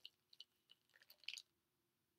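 Faint plastic clicks and light rattling as a supplement bottle's screw cap comes off and a capsule is shaken out, a few scattered ticks with a slightly louder cluster a little over a second in.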